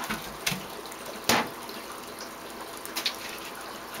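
Tap water running into a sink in a steady stream, with a few sharp knocks and clicks as parts are handled; the loudest knock comes just over a second in.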